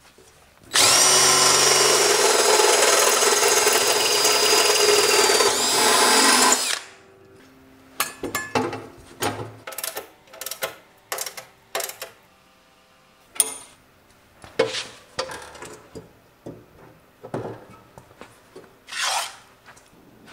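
Power drill boring a hole through the bandsaw's steel stand for about six seconds: a steady, loud whine that rises a little just before it stops. Then comes a string of short clicks and knocks as the wheel axle bracket is handled.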